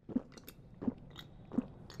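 Faint gulping as a drink is swallowed from a can, three soft gulps about two-thirds of a second apart.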